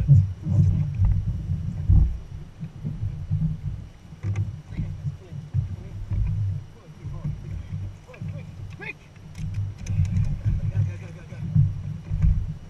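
Water slapping on a small boat at sea, with a low, uneven rumble and muffled voices. A quick cluster of sharp clicks comes about nine to ten seconds in.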